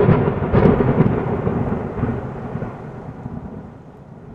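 Thunder-like rumble sound effect in a channel intro, starting loud and fading away steadily over a few seconds.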